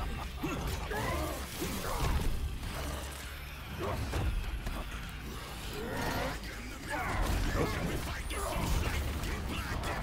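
Soundtrack of an animated fight scene: mechanical clanking and impact sound effects with short voice-like shouts, over a steady low rumble.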